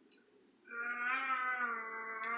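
A single drawn-out voice sound, starting about half a second in and held for about two seconds with a slight waver in pitch.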